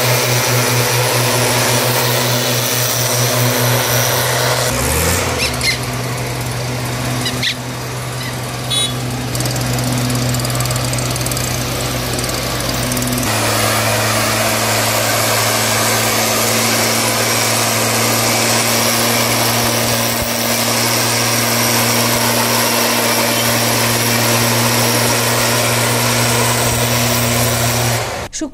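Small two-stroke engine of a backpack power sprayer running steadily at high speed while spraying disinfectant. Its note drops slightly and changes abruptly about thirteen seconds in.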